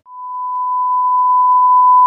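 Censor bleep: a single steady pure beep tone that grows louder over the first half second and then holds.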